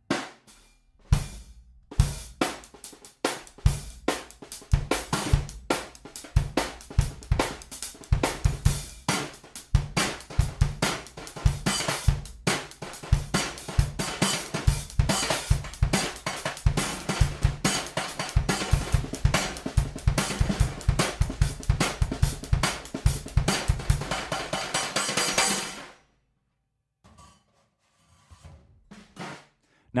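Drum kit played with bass drum, snare and hi-hat, accented by hits on a Wuhan 8-inch splash cymbal used as an effect over the drums. The playing grows busier and denser towards the end, then stops a few seconds before the end.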